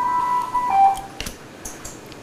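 Intensive-care ventilator alarm: a steady beep held about half a second, then a short lower beep. It beeps all the time, not without reason, as the patient's breathing is failing.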